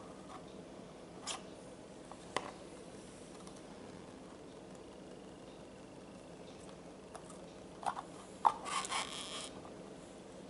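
A few light clicks and knocks from handling plastic ice-lolly moulds and carrot pieces on a wooden chopping board, with a short cluster of clatter and rustling near the end as a stick-lid is fitted.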